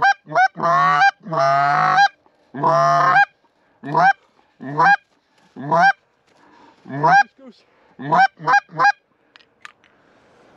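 Loud Canada goose honking: a quick run of short rising honks, two longer drawn-out calls about a second and three seconds in, then spaced honks and clucks that thin out and stop near the end.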